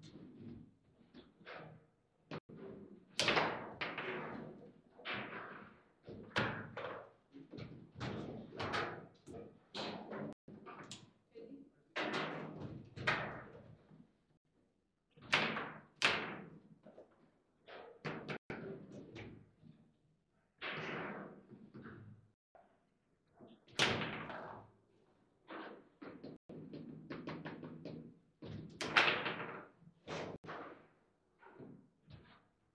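Table football (foosball) being played fast: an irregular run of sharp knocks and clacks from the ball being struck by the rod-mounted players and bouncing off the table walls, with a few louder slams.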